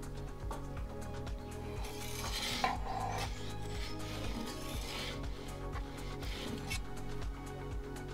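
A perforated metal turning peel scrapes across the pizza oven's stone floor as it slides under the pizza and turns it. There are three scrapes: a longer, louder one about two seconds in, then two short ones around five and six and a half seconds.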